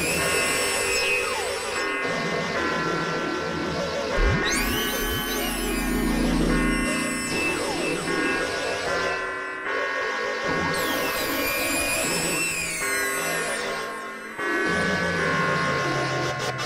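Experimental electronic synthesizer noise music: dense layers of steady buzzing tones that shift in blocks every couple of seconds. High tones sweep down in pitch about 4 s and again about 11 s in, with a deep bass rumble from about 4 s to 7 s.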